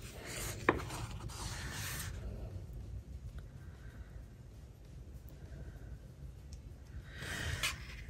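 Faint rustling and rubbing of paper stickers being handled: a sticker-book page turned and a fingertip pressing a sticker down onto a planner page. There is a short rustle at the start, a single small tick under a second in, and another brief rustle near the end.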